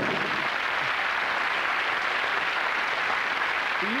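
Studio audience applauding, a steady clapping that runs on until a voice starts near the end.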